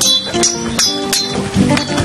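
Dramatic background music with sustained notes. Over it come several sharp, ringing metallic clinks in the first second and a half: machete blades clashing.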